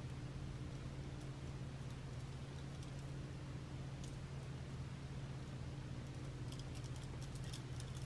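Faint clicks of glass beads and small metal charms being handled on a bead bracelet: one about halfway through and a quick cluster near the end, over a steady low hum.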